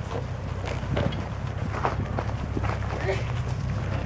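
Jeep Cherokee XJ crawling slowly up a rocky trail: the engine runs at low revs with a steady low hum, while tyres crunch and rocks knock and click under it.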